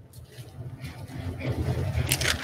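Pages of a Bible being leafed through on a wooden pulpit close to the microphone: soft rustling over a low rumble that grows louder toward the end.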